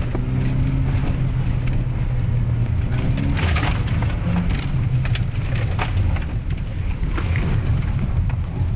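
Volvo 740's engine running steadily under load, heard from inside the cabin, while the car drives through mud and slush; repeated short rushing spatters, loudest about three and a half seconds in, are mud and slush thrown against the car's underside.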